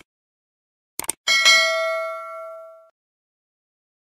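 Two quick clicks, then a bright bell ding that rings out and fades over about a second and a half: the click-and-bell sound effect of a subscribe-button animation.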